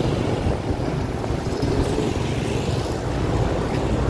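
A vehicle engine running steadily with a continuous low rumble.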